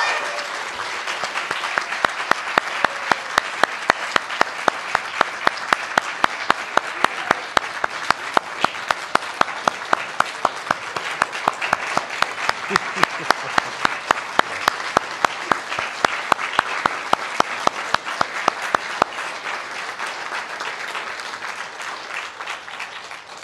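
Audience applauding, with one sharp, close clap standing out in a steady rhythm of about three a second from about two seconds in until near the end. The applause thins out toward the end.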